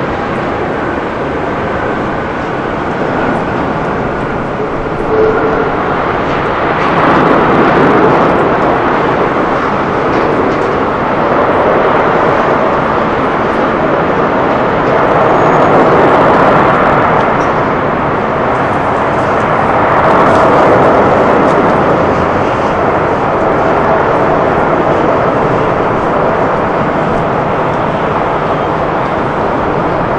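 Airbus A380-800 jet engines during the landing touchdown and rollout: a loud, steady rush of jet noise that swells and fades several times.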